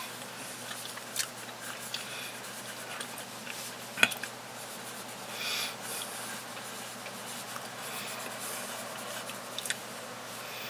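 Quiet table sounds of someone eating with a spoon: scattered small clicks and one sharp click about four seconds in, over a faint steady hiss.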